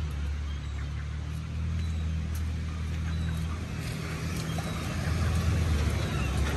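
Street traffic on a rain-wet road: a steady low engine hum under an even hiss.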